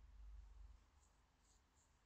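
Near silence: faint room tone with a low rumble.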